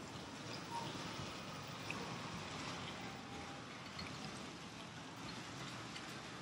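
Faint outdoor ambience of a rain-wet street: a soft, even watery hiss with a few faint small ticks.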